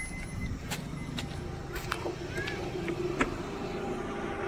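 Maruti Ertiga CNG's four-cylinder engine idling steadily, with a few light clicks and knocks scattered through it.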